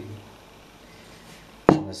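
A single sharp knock of a hard object set down on the kitchen table, about one and a half seconds in, after a quiet stretch of room tone.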